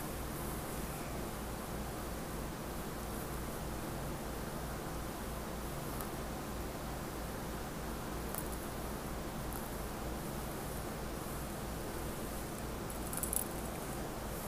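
Fingertip tracing and lightly scratching along the raised weave of a textured fabric, faint soft rustles over a steady background hiss and low hum, with a slightly louder scratch near the end.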